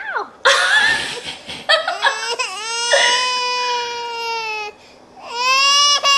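Exaggerated, comic crying: a brief shriek, then two long, drawn-out wails with a short gap between them, from the soundtrack of a lip-sync clip.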